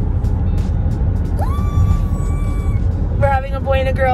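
Steady low road and engine rumble inside a moving car's cabin. About a second and a half in, a single high note rises and holds briefly, and a high voice starts talking near the end.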